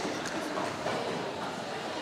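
Steady rumble of many quad roller skate wheels rolling on a wooden sports-hall floor during play, with faint voices in the hall.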